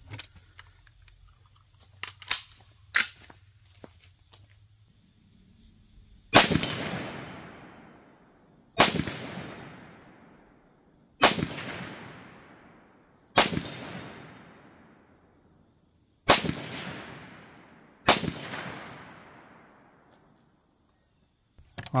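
Six single rifle shots from a semi-automatic 7.62x39 AR-style rifle, fired deliberately about two to three seconds apart starting some six seconds in, each crack followed by a long echo that fades away over about two seconds.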